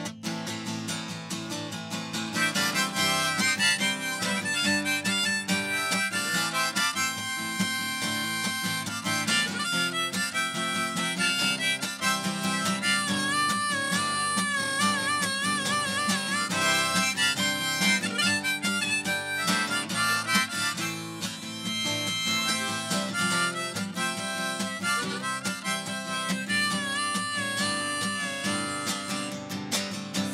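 Harmonica solo played from a neck rack over a strummed acoustic guitar, in an instrumental break of a folk-punk song. Held harmonica notes waver in pitch about halfway through and again near the end.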